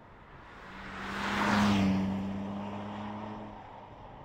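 BMW Z4 coupe's straight-six engine and tyres driving past. The sound swells to a peak about a second and a half in, then the engine note drops slightly and fades as the car goes away.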